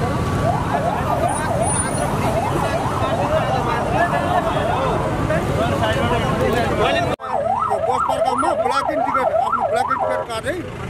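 Police siren wailing rapidly up and down over street noise. After a sudden cut about seven seconds in it sounds clearer and regular, at about three sweeps a second.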